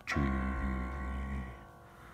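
A man singing a very low G1 in chest voice, held for about a second and a half and then fading, begun together with the G1 key of a touchscreen piano app.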